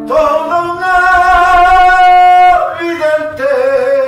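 Male voices singing, holding one long note for about two seconds before starting a new phrase, accompanied by acoustic guitars and a cajón.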